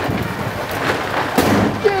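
Corrugated plastic wiring conduit scraping and rattling against the steel panels of a van's body as it is forced through the wall cavity: a rough, uneven noise with a few sharper knocks, the conduit going through with difficulty.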